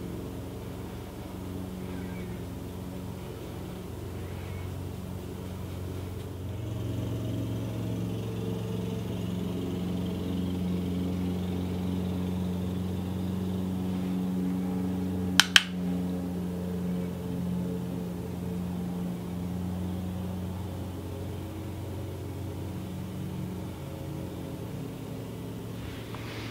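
A steady low mechanical hum that swells a little through the middle, with one sharp click a little past halfway.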